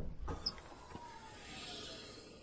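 Logo-animation sound effect: the decaying tail of a deep impact, small high clicks about half a second in, a faint tone slowly falling in pitch, and a soft hiss swelling near the end.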